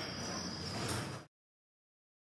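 Skateboard wheels rolling on smooth paving, fading as the board moves away, then cut off suddenly a little over a second in.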